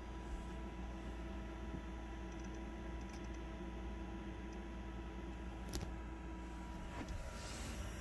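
Eberspacher D2 diesel air heater running, a steady hum from its blower with a couple of faint steady tones. A single faint click comes near the end.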